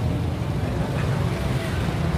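Street traffic: a steady low rumble of motorcycles and cars running along a city road.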